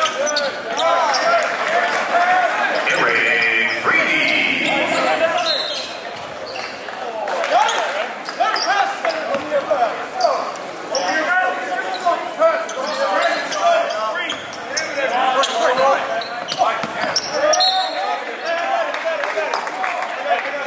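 Live gym sound at a basketball game: many indistinct overlapping voices of spectators and players, with a basketball bouncing on the hardwood court.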